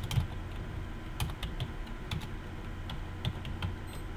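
Computer keyboard being typed on: an irregular run of key clicks as a word is keyed in.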